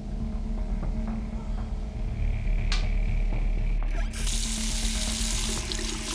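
Bathroom tap turned on, water running into the sink with a steady hiss that starts abruptly about four seconds in, over background music. A brief sharp click comes shortly before it.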